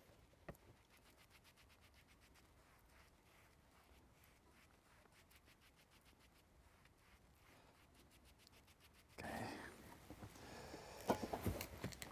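Near silence with faint, quick, evenly repeated strokes of a foam glue sponge being wiped across a table tennis rubber sheet, then a few light clicks near the end.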